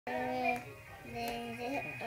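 Light-up singing doll playing a recorded song through its small built-in speaker: a sung melody of long, level held notes.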